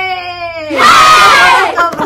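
Two women's voices shouting a drawn-out greeting together: a long held call, then about a second in a louder, shrill shout lasting about a second.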